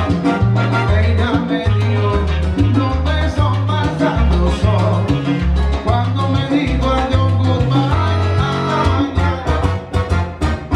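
Live salsa band playing through PA speakers: a steady, stepping bass line under sharp percussion hits and the rest of the band.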